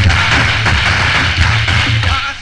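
A reggae riddim playing through a dance-hall sound system, with a deep pulsing bass line under a loud, steady rushing noise. No voice over it.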